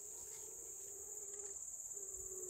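Steady high-pitched insect chorus, the chirring of crickets in the meadow, with a faint steady low hum beneath it.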